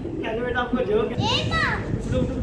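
Children's voices and laughter, with a child's voice sliding up high and back down about a second and a half in.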